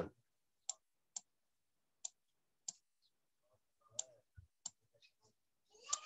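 About six faint, sharp clicks, spaced unevenly, in near silence, made by the input device as the figure 29,000 is handwritten onto a digital slide with a pen tool.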